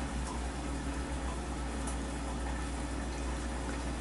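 A steady hiss over a low hum: a second chicken steak cooking in a covered frying pan on the stove.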